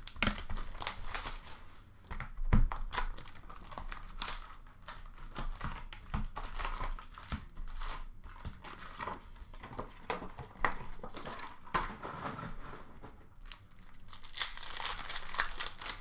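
Hockey card packs' plastic wrappers being torn open and crinkled by hand, with cardboard box and pack handling making small clicks. There is a sharp knock about two and a half seconds in, and a denser stretch of crackling near the end.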